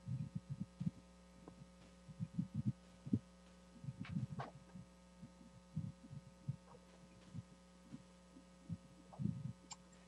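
Quiet room tone over an open video-call microphone: a steady electrical hum, with irregular soft low thumps and bumps and a few faint clicks.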